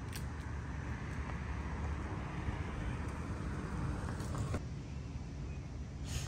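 A car driving along a residential street, a steady low rush of engine and tyre noise that swells slightly mid-way.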